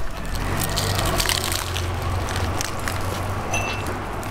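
Crunching of crisp tostadas being bitten and chewed, a scatter of short crackles over a steady low hum.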